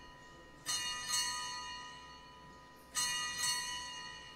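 Altar bells rung at the elevation of the consecrated host, marking the moment the host is shown to the people. Two pairs of quick double rings come about two seconds apart, about a second in and about three seconds in, each ringing out with several high tones and fading.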